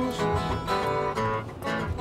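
Acoustic guitar strummed, with repeated strokes and chords ringing between them, as the instrumental accompaniment to a blues song.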